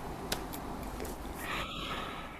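Steady background noise of a video-call recording, with one short click about a third of a second in.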